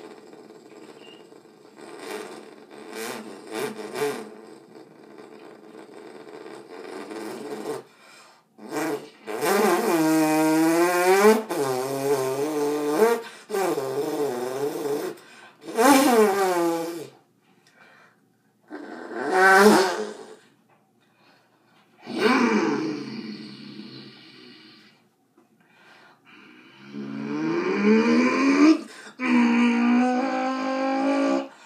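Mouth-made sound effects: a person's voice producing several separate runs of gliding pitched tones that slide up and down, after a few short clicks and puffs.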